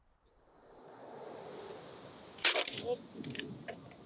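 A soft rush of beach surf swelling up, then a sharp click and several lighter clicks of plastic surfboard fins being handled on the board.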